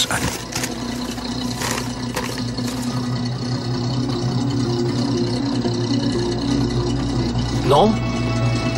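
A vehicle engine idling, a steady low hum that grows slightly louder, with a brief rustle about two seconds in.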